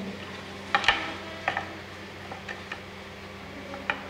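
A few light clicks and taps as hands handle a shuttle and the warp threads on a hand loom, over a steady low hum.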